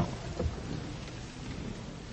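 Concert-hall ambience before the music: a sharp knock at the start and a duller one about half a second in, then a faint steady hiss of room noise with no instruments playing.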